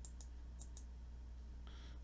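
A few faint computer mouse clicks in the first second, over a low steady hum, with a short hiss near the end.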